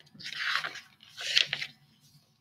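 Paper pages of a hardcover picture book rustling and crinkling as they are turned, in two short bursts about a second apart.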